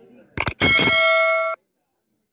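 Subscribe-animation sound effect: a quick double click as the notification bell is tapped, then a bright bell ding that rings for about a second and cuts off abruptly.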